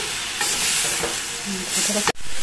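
Green beans and garlic sizzling in a stainless steel pot while a wooden spoon stirs them. The sizzle swells twice, about half a second in and again near the end.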